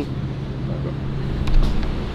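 Steady low hum of convenience-store room noise from the drink coolers and air handling, under a low rumble of handling noise as the camera is carried along, with a few light knocks about one and a half seconds in.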